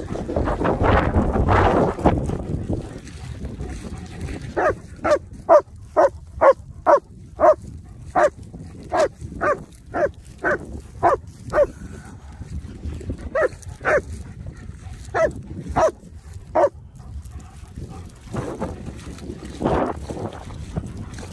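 German shepherd barking in a run of short, sharp barks, about two a second, with a pause in the middle before a few more. A rush of noise comes before the barking.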